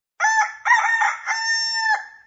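A rooster crowing once: a few short rising notes ending on a long held note.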